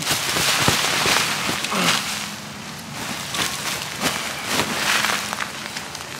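A fabric grow bag being pulled up off its soil, the potting soil sliding out and spilling onto a plastic tarp: a dense rustle and patter for about the first two seconds, then scattered crackles and small clicks as the soil settles and the tarp crinkles.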